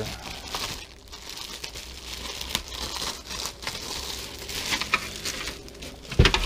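Clear plastic wrap crinkling irregularly as hands handle bagged plastic motorcycle fairing pieces.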